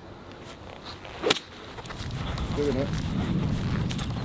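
A golf iron strikes the ball once, a single sharp crisp click about a second and a half in, on a hook shot. It is followed by a low rumbling from footsteps on grass, building toward the end.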